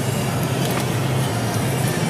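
Steady engine and road noise inside a moving car's cabin, with music playing underneath.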